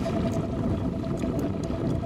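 Boat's outboard motor idling in neutral, a steady low rumbling noise.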